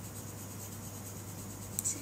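Coloured pencil shading on paper: a faint, steady scratching.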